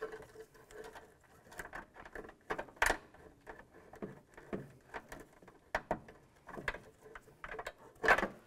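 Exterior side mirror assembly and its wiring cable being handled and slid free of a truck door: irregular small clicks, taps and rustles, with one sharper knock about three seconds in.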